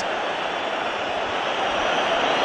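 Steady noise of a large football stadium crowd.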